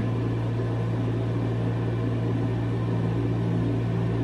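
A steady low hum from a running motor or electrical appliance, unchanging throughout, with no other distinct sounds.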